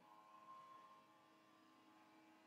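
Very faint, steady whine of a document scanner's motor running a preview scan.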